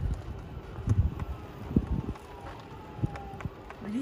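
Golf cart rolling along a rough dirt road: a low rumble with irregular knocks and rattles as it jolts over bumps, with wind on the microphone.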